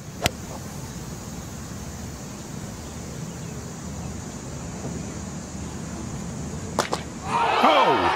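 A golf club striking the ball off the tee, one sharp click a quarter second in, over a steady outdoor murmur. Two quick knocks come near the end, and then a crowd breaks into cheering and shouts.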